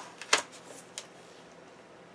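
Paper sticker sheet being handled against a planner page: a few short crisp crinkles in the first second, the loudest about a third of a second in.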